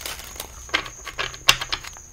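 A deck of tarot cards being shuffled by hand: a run of irregular crisp clicks and slaps as the cards hit one another, the loudest about a second and a half in.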